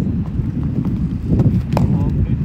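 Wind buffeting the microphone with an uneven low rumble, over a few sharp knocks of cricket balls being struck or caught. The loudest knock comes near the end.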